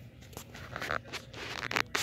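Rustling and scraping handling noise from a handheld phone or camera being swung around, with a run of small crackles and clicks and a sharper click near the end.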